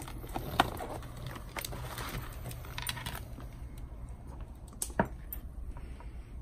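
Handling noise from fitting a Cardo Freecom 2+ intercom mount onto a helmet shell and working the helmet's padding: plastic clicks and rustling. Two sharp clicks stand out, one about half a second in and a louder one about five seconds in.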